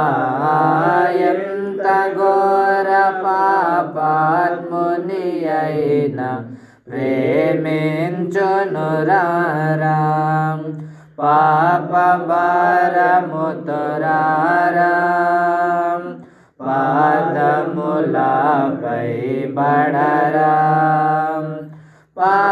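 A man singing a Telugu Christian hymn (keerthana) in four long, flowing melodic phrases with brief breaks between them.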